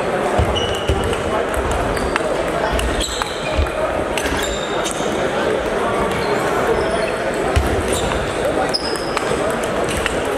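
Table tennis balls clicking off paddles and tables from several tables at once, short irregular hits scattered throughout, over a steady hubbub of voices in a large sports hall.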